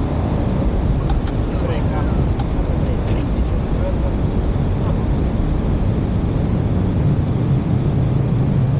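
Boeing 737 flight-deck noise during touchdown and landing rollout: a steady low rumble of airflow and wheels on the runway, with a few faint clicks in the first couple of seconds. The low rumble grows stronger near the end.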